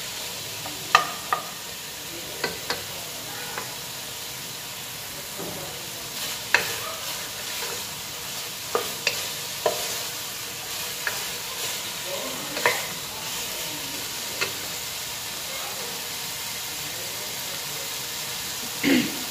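Chicken, broccoli and green beans stir-frying in a pot: a steady sizzle, with a wooden spatula knocking and scraping against the pot a dozen or so times at uneven intervals. The strikes stop in the last few seconds, leaving only the sizzle.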